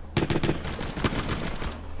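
A rapid series of gunshots, shot after shot for about a second and a half, then stopping.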